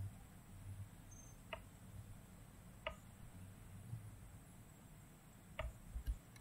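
Computer mouse clicking: three separate sharp clicks, over a faint low hum.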